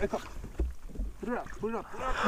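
Two short wordless exclamations from an excited voice, about a second and a half in, over a few dull low thumps.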